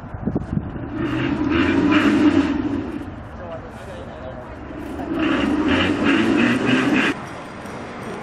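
A small rail speeder car running on the track, with people's voices over it; the sound swells twice.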